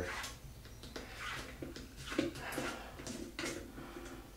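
A nylon nut being unscrewed by hand from the threaded plastic shank under a toilet tank, with light scraping and scattered small clicks of plastic on plastic.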